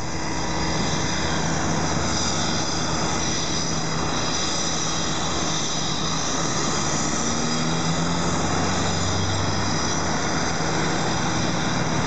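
Steady city traffic at a busy multi-lane intersection: many cars driving through, with one engine note rising as a vehicle pulls away about seven seconds in.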